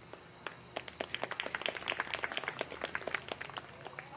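Scattered outdoor clapping from a small crowd: many separate claps that start about half a second in and die away near the end. It is applause for a marching band that has just finished playing.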